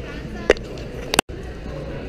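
Background chatter of many people in a large hall, with a sharp tap about half a second in and a quick double click just after a second, followed by an instant where the sound drops out completely.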